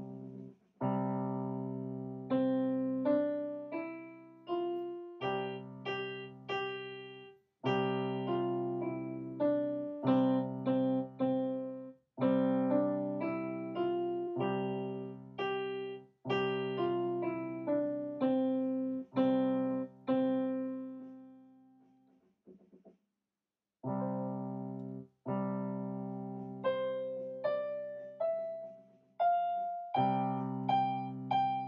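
Kawai digital piano playing a simple Czech folk tune slowly, by a beginner child pianist. A single-note melody moves up and down by step over held low chords, in short phrases, with a brief break about three-quarters of the way through before the tune starts again.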